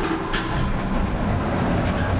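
A loud, steady, heavy mechanical rumbling sound effect, with a brief sharper sound about a third of a second in.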